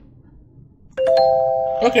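Electronic chime: a clear note sounds suddenly about a second in, two higher notes join it a moment later, and the chord rings on steadily until a voice cuts in.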